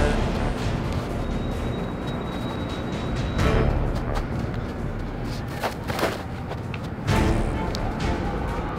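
Background music with a heavy, steady low end and a few sharp hits.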